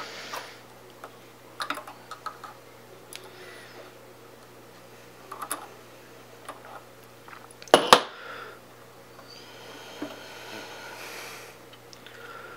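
Small scattered clicks and taps of a soldering iron and fingers working at a turntable's circuit board while a wire is soldered on, with one sharper click about eight seconds in, over a steady low hum.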